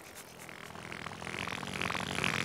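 A rattling, whirring sound effect growing steadily louder as the voice trumpet rises out of the ground.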